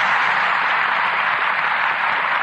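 Studio audience applause, a steady even clapping.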